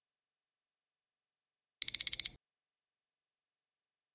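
A short electronic alarm-style sound effect: a quick burst of about four high beeps lasting about half a second, about two seconds in, marking the quiz countdown timer running out.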